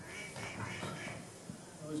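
A man's wordless vocal sound as he is woken and sits up, a groan-like noise not picked up as words. He starts to speak right at the end.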